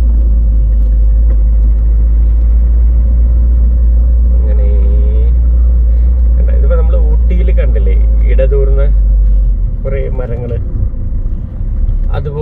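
Low, steady rumble of a car driving along a road, loud until it eases about nine and a half seconds in. A voice speaks in short phrases over it during the second half.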